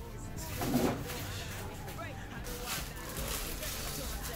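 Low, indistinct talking with music in the background.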